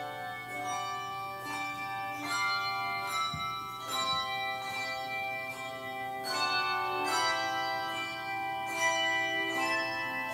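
Handbell choir playing a slow piece: struck bell notes ring on and overlap, with new chords sounding every second or so.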